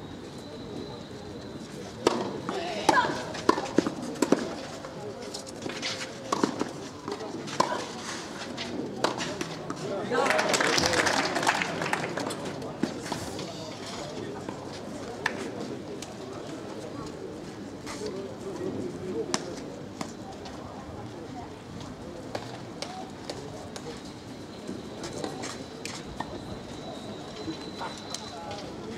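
Tennis rally: a series of sharp racket-on-ball hits over several seconds, followed by a short burst of applause from the spectators lasting about two seconds, then crowd chatter.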